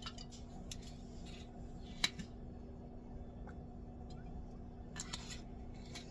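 A few sharp, isolated clicks over a faint steady hum, the loudest click about two seconds in.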